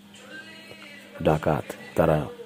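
A man's voice speaking briefly over faint background music.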